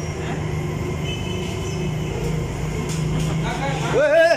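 A steady low mechanical hum, with a man's voice coming in near the end.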